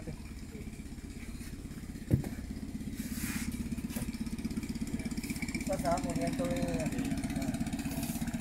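Small boat outboard motor running slowly, with an even pulsing rumble that grows gradually louder as a lancha passes close by. A single sharp knock about two seconds in.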